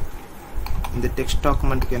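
Typing on a computer keyboard: a scatter of short key clicks.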